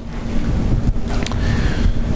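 Microphone noise: a loud rushing rumble on the mic, like wind or rubbing across it, with a single click about a second in.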